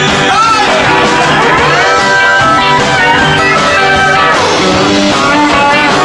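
Live hillbilly boogie band playing loudly, with an electric guitar taking a lead break full of notes bent up and down over the rhythm.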